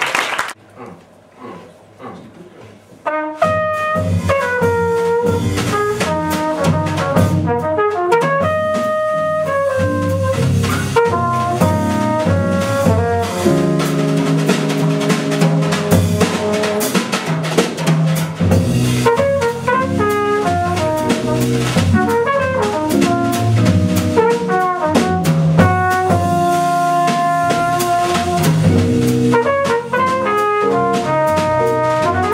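Live jazz quartet: a brass horn carries the melody over electric jazz guitar, double bass and drum kit. The band comes in about three seconds in, after a brief quiet.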